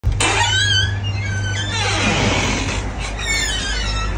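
A door being pushed slowly open, its hinges creaking in a string of wavering high squeaks, one gliding down in pitch about halfway through, over a low steady hum.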